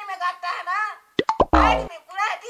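Talk, then a short comic sound effect about a second and a quarter in: a few quick pops and a pitch sweep, followed by a louder tone that falls in pitch.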